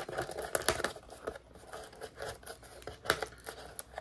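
Fingers picking at and tearing open the plastic wrap of a cardboard trading-card blaster box: an irregular run of crinkling, crackling and tearing.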